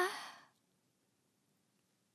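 The tail of a held note sung by a female voice in a J-pop song, fading out over about half a second, then near silence.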